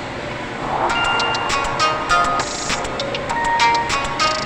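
Background music: short, clipped melody notes over a beat of sharp percussive hits.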